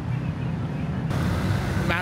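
Road traffic: a steady low rumble of vehicle engines, with a broader hiss of traffic coming up louder about a second in.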